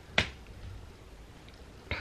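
A single short, sharp click just after the start, followed by a quiet pause in a small room.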